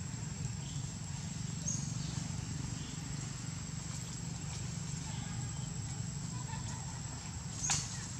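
Outdoor ambience: a steady low rumble under a thin, steady high-pitched whine, with a faint short chirp about two seconds in and a brief sharp chirp-like sound near the end.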